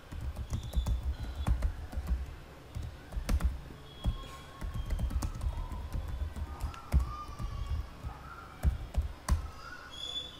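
Typing on a computer keyboard: irregular runs of keystroke clicks, each with a low thud.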